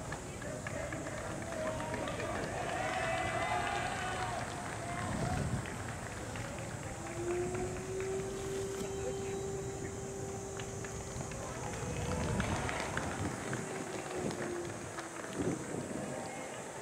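Indistinct voices talking over a steady outdoor background hiss, with one steady low tone held for about seven seconds, starting about seven seconds in.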